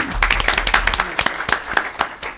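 An audience applauding briefly, the clapping thinning out near the end.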